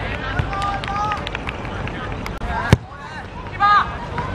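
Players calling and shouting across an outdoor football pitch, with a steady low rumble. A single sharp knock comes about two-thirds of the way through, and a loud short shout follows near the end.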